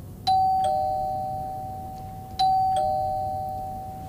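Two-note ding-dong doorbell chime rung twice, about two seconds apart: each time a higher note then a lower one, both left to ring and fade.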